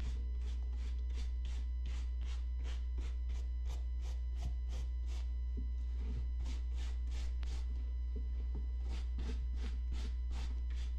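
A small hand brush scrubbing the fabric of a Coach tote bag in quick, even back-and-forth strokes, about three to four a second, brushing out dust. A steady low hum runs underneath.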